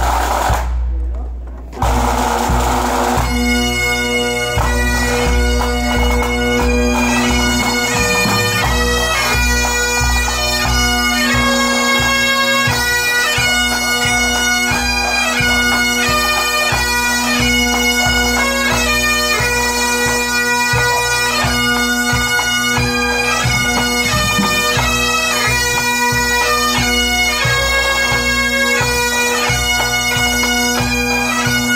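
Pipe band striking in: a drum roll, then the Highland bagpipes' drones sound about two seconds in and the chanters start the tune a second later. The pipes then play steadily over the beat of the snare, tenor and bass drums.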